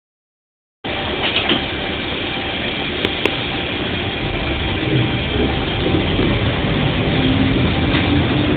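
Diesel engine of a KiHa 40 railcar heard from inside the driver's cab, running steadily, with a couple of sharp clicks in the first few seconds, and growing louder over the last few seconds.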